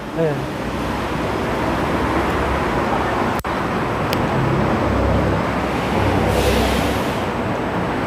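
City street traffic: a steady hum of passing vehicles with a low rumble that swells about five seconds in, and a short hiss a little after six seconds.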